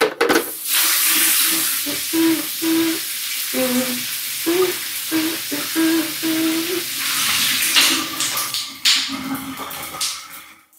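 Hotel shower running, a steady hiss of spraying water. Short pitched notes sound over it between about two and seven seconds.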